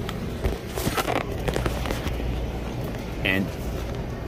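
Steady low hum of the refrigerated case's running fans, with a few short knocks and rustles of hands working in the unit about a second in.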